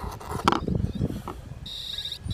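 A steady high-pitched electronic beep starts near the end, over a low uneven rumble of wind on the microphone. It is an arming signal from the 3DR Solo drone.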